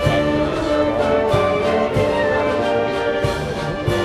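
A wind band of brass and woodwinds playing a march live, holding full chords over a steady drum beat.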